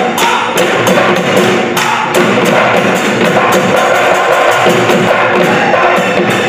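Live Bihu music: dhol drums played by the performers, with a fast, even percussion beat of about four strokes a second.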